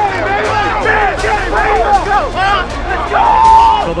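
Several men shouting and whooping at once in excited celebration, their voices overlapping, with one long drawn-out shout near the end.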